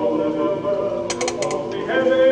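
Male a cappella quartet singing sustained chords in close harmony. A brief run of sharp ticks comes about a second in.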